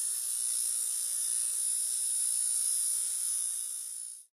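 Electronic intro sound effect: a steady high-pitched hiss over a faint low hum, starting suddenly and fading out near the end.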